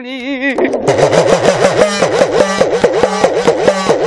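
Udukkai hourglass drum played in a fast, even roll, its pitch swooping up and down in the drum's typical talking glide. The roll starts about half a second in, as a sung line ends.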